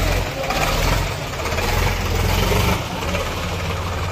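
A tractor's diesel engine idling steadily with a low rumble.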